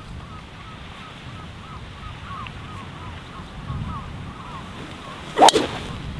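A golf driver striking the ball off the tee: one sharp, loud crack about five and a half seconds in.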